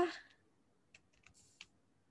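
Faint typing on a computer keyboard: a handful of short keystroke clicks in the second half, as a word is typed.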